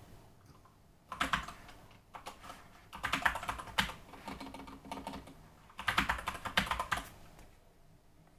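Typing on a computer keyboard: several quick runs of keystrokes with short pauses between, as an email address is entered into a login field.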